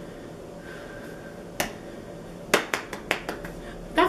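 A few sharp clicks made with the hands: a single one about one and a half seconds in, then a quick run of about five a second later.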